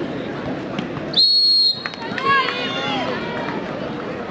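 A referee's whistle blown once, a single high, steady blast of about half a second a little over a second in, over the steady chatter and shouts of a large crowd of spectators.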